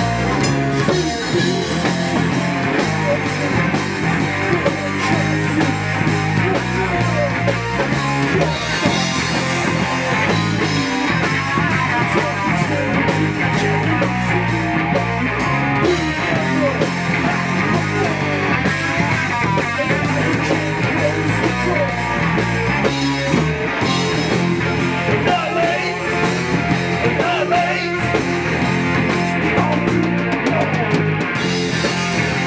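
Punk rock band playing live: electric guitar, bass guitar and drum kit, with a singer's vocals into a handheld microphone. Loud and continuous throughout.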